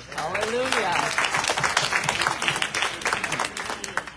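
A congregation applauding, with close, rapid clapping that swells about a second in and dies away near the end. A voice calls out over the clapping in the first second.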